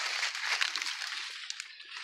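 Leaves of a tall corn plant rustling as the plant is grabbed and pulled in close, the rustle fading over the two seconds.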